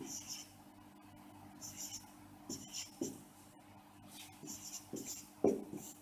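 Dry-erase marker squeaking and tapping on a whiteboard as digits are written by hand, in about half a dozen short strokes spread through a few seconds, the loudest near the end.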